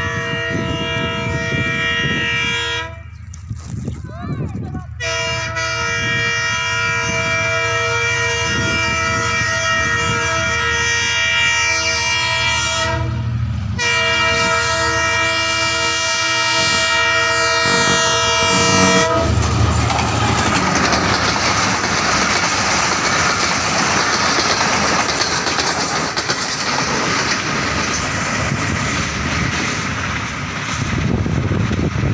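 A railway locomotive's chord air horn sounds three long blasts; the second, the longest, lasts about eight seconds. After the third blast the train's running noise and wheel rattle take over and stay loud as it comes up and passes close by.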